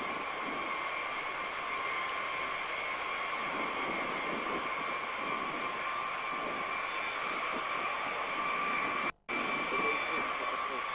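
Boeing B-52H Stratofortress taxiing, its eight TF33 turbofan engines giving a steady high whine over a broad rushing noise. The sound cuts out for a moment about nine seconds in.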